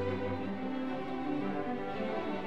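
A string orchestra of violins and cellos playing slow, sustained bowed chords at an even level.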